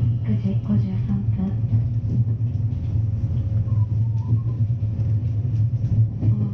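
Low, steady rumble of an electric rapid train running, with a voice speaking over it.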